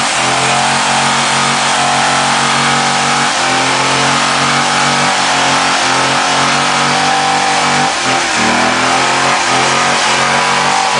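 C6 Chevrolet Corvette's V8 held at high revs in a power-brake burnout, rear tyres spinning on concrete. The revs dip briefly about eight seconds in and climb back.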